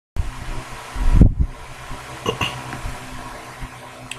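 Steady electrical-sounding hum and hiss of room noise picked up by a webcam microphone, with a loud low thud a little after a second in, like the microphone being bumped or handled.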